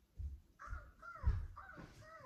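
A puppet character's voice on a TV set giving about three short cries that fall in pitch, heard through the TV speaker, with a dull low thump under the second cry.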